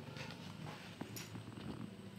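Faint handling of a paper-wrapped packet of metal bangles, with a light click about a second in, over a low steady hum.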